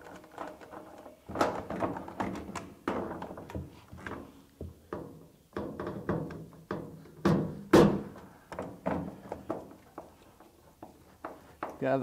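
Short clicks and knocks of a hand screwdriver and a quarter-20 screw against a plastic PACKOUT mounting plate as the screw is worked into a rivet nut beneath, hunting for the thread, over background music.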